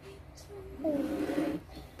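A child's short wordless voice sound, a hum or 'ahh', about a second in and lasting under a second.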